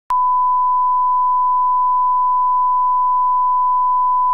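Broadcast line-up reference tone: a single steady 1 kHz beep that starts a moment in and holds at one pitch and level, played over the programme's slate.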